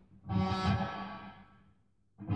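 Electric guitar struck once about a quarter second in, the note ringing and fading away to silence over about a second and a half.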